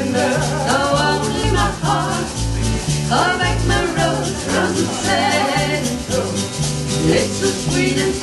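Live country band playing an instrumental break between verses: a bass line stepping from note to note, guitar, and a hand shaker rattling steadily in time.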